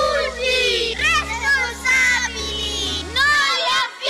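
A group of children singing or chanting together in short phrases over a backing track with a low bass line, which drops out shortly before the end.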